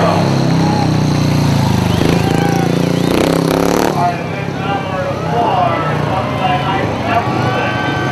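Speedway motorcycle's single-cylinder engine running and revving, its pitch sliding up and down, for about the first four seconds; after that, people's voices take over.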